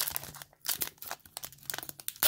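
Trading cards being thumbed through by hand: stiff card stock sliding and flicking against the stack in a run of light, irregular clicks and rustles.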